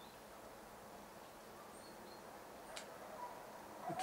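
Faint outdoor ambience: a low, steady hiss with a couple of brief, faint high bird chirps about halfway through.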